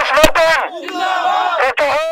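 Men shouting political slogans over a microphone and loudspeakers, with a crowd shouting along; each shout falls in pitch at its end. A sharp knock about a quarter second in.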